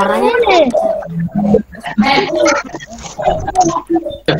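Unclear talk: several voices over a video call, overlapping in the first second.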